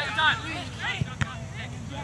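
Indistinct calls and shouts carrying across an open soccer field, with a single sharp knock a little past a second in.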